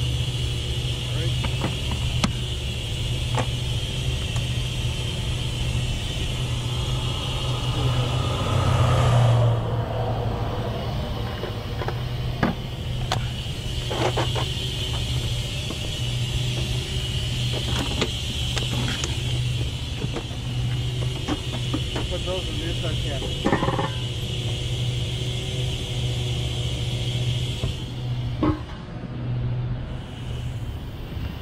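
A heavy vehicle's engine idles with a steady low drone. Over it come a few sharp metallic clinks of hand tools as the bus's axle shaft is being taken off.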